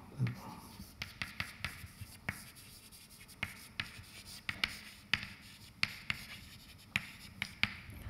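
Chalk writing on a blackboard: irregular sharp taps and light scratches as letters are chalked out.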